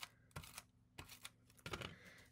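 Faint handling of paper and cardstock on a cutting mat: three soft ticks and taps as a flip-flap is set down and pressed onto the page.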